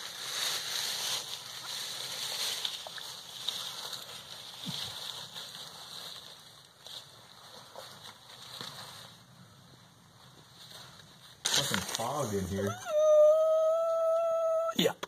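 Faint rustling of dry leaves and dirt as a person crawls into a tight cave opening. Near the end, a sudden loud human cry: it wavers, then holds one high note for about two seconds, a startled yell.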